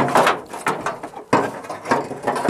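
The hood of a weathered junkyard 1957 Chevrolet Bel Air being heaved open by hand: metal scraping and clanking of the hood and its hinges in two loud bursts about a second and a half apart.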